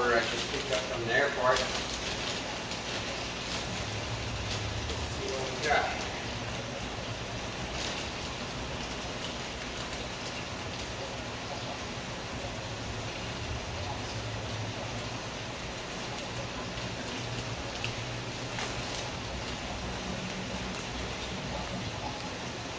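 Steady rushing hiss of running water from the shop's aquarium filtration, with a few light crinkles as a plastic fish bag is handled. A man's voice is heard briefly at the start and about six seconds in.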